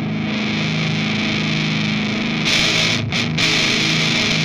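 Electric guitar with a Seymour Duncan Invader bridge pickup, played through a This Heavy Earth Bad Trip pedal, a RAT-style distortion. Low notes ring out heavily distorted, then about two and a half seconds in the tone turns brighter and harsher for under a second, with two very short breaks.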